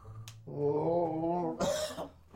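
A person's drawn-out vocal groan with a wavering pitch, ending in a short, harsh cough-like burst near the end.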